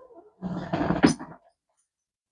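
A man's brief strained groan of effort as he twists and leans over; it starts about half a second in and lasts about a second.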